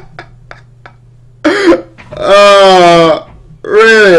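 A man's voice making long, drawn-out wordless vocal sounds: a short burst about a second and a half in, a cry held for about a second, and a shorter one near the end.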